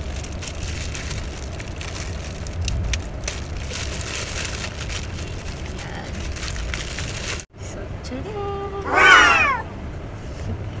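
Clear plastic packaging rustling and crinkling as a handbag is handled and unwrapped from its plastic bag. It breaks off suddenly, and near the end there is a brief, loud, high-pitched vocal cry that falls in pitch.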